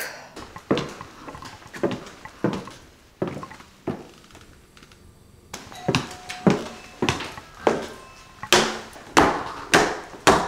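Footsteps of heeled mules on a hardwood floor at a steady walking pace, about one and a half steps a second, getting louder about halfway through.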